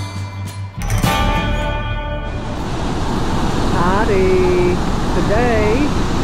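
Guitar music for about the first two seconds, then loud, steady rushing of river water pouring over a mill dam spillway. A few brief voice sounds are heard over the water later on.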